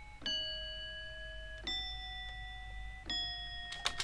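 A recorded alarm clock bell sample played back as pitched notes: clear ringing bell tones, each held about a second and a half, stepping down, then up, then slightly down again, three new notes struck in turn.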